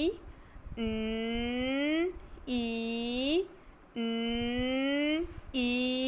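A woman's voice sounding out the letter sounds 'n' and 'i' as long drawn-out tones, four held sounds of about a second each, every one rising in pitch at its end.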